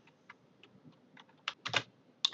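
Scattered key clicks from a computer keyboard: a few faint ones, then a quick run of three louder clicks about one and a half seconds in.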